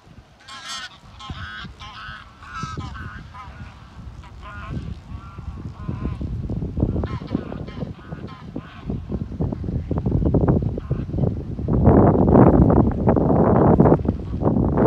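A flock of greylag geese honking, the calls densest in the first few seconds. Under them a low rushing noise builds up and is loudest near the end.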